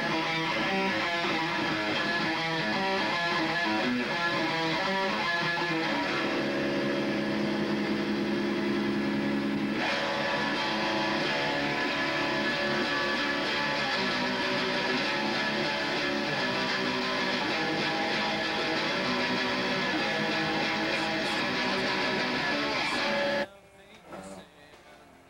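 Electric guitar played through an amplifier: quick picked notes at first, then held, ringing chords from about six seconds in, then more changing notes after about ten seconds. It cuts off suddenly just before the end.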